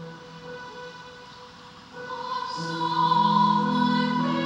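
Church music for the offertory of the Mass: held sustained chords that soften for a moment, then swell about two seconds in into a fuller, louder chord with singing above it.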